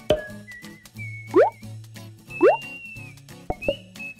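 Light, playful background music with two quick rising 'bloop' sound effects about a second apart, then short plucked notes near the end.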